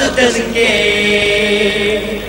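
A male singer in a band's song: a short sung phrase, then one long steady held note with no drum beat under it.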